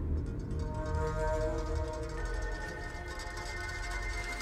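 Film score music: sustained held tones that enter one after another and layer up over a low rumble.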